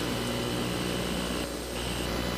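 Steady low hum with a hiss over it, unchanging through a pause in the talk: the background noise of the recording.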